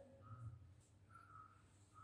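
Near silence: room tone with a faint low hum and two faint, short, high steady tones.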